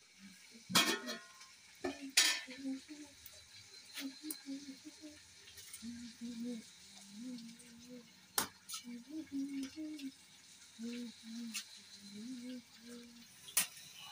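A metal spoon stirring food in a metal cooking pan, scraping and clinking against it, with a light sizzle of frying underneath. A few sharp metallic clanks stand out, the loudest about two seconds in.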